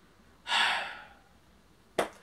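A man's single audible sigh about half a second in, a breathy exhale that swells quickly and trails off, in frustration at the figure's poor ankle articulation. A brief click near the end.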